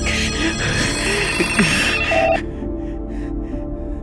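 A telephone ringing in rapid repeated strokes over a film-score music bed. The loud ringing cuts off suddenly about two and a half seconds in, leaving the music with faint ringing.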